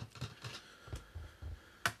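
A few faint clicks and soft knocks of hands handling small plastic paint pots and a brush on a desk, with one sharper click near the end.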